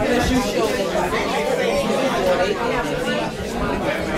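Several people talking at once in casual, overlapping chatter, no single voice standing out.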